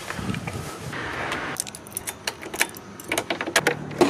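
A bunch of keys jangling, with a run of sharp metallic clicks through the middle as the keys are handled. A low steady hum starts near the end.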